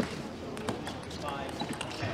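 A few sharp taps of a celluloid-type table tennis ball bouncing, with a short voice calling out partway through.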